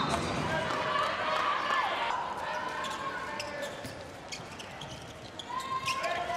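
A handball bouncing on the hard indoor court floor in a run of sharp bounces, over the steady background noise of an arena.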